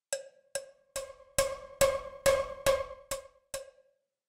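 Sampled cowbell from the GCN Signature Three Cowbells Kontakt library, struck nine times at an even pace of a little over two hits a second. Each hit rings on one pitch and fades; the middle hits are the loudest. It is played through the library's 'power' effect, which combines tape saturation and distortion.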